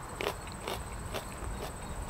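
A man chewing a mouthful of raw habanada pepper (a sweet habanero) close to a lapel microphone: short crunches of the crisp flesh, about two a second.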